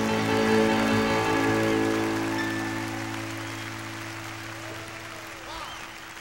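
A live band's held chord ringing and slowly fading after the last sung line of a slow blues, with faint whistles and cheers from the audience in the second half.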